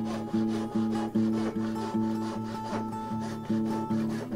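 Hand saw, a thin-bladed Japanese-style pull saw, cutting through a board in quick, even strokes, about three a second, with guitar music playing underneath.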